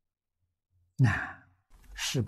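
About a second in, a man gives a short voiced sigh that falls in pitch and fades within half a second, followed by a faint breath in just before he speaks.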